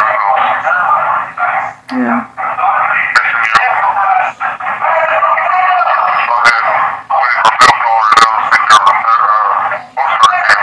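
Loud background voices and chatter in a jail, heard over an inmate phone line that makes them thin and narrow, with no clear words. A few sharp clicks come through in the second half.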